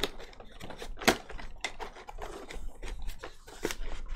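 Cardboard and plastic packaging of a Pokémon card collection box being handled and opened: a string of irregular sharp clicks, crackles and crinkles, the sharpest right at the start and about a second in.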